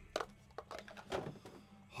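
A few faint, light clicks and taps of handling noise at the table, between stretches of talk.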